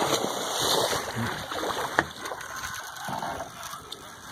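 Water splashing and sloshing at the river surface beside the boat, loudest in the first second, with one sharp knock about two seconds in.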